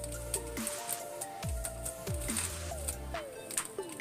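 Background music with a steady beat and low bass notes that slide down in pitch.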